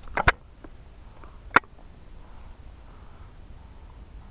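Close handling noises as a freshly landed largemouth bass is grabbed on a rocky bank: two quick sharp clicks near the start and a single sharp snap about a second and a half in, over a quiet outdoor background.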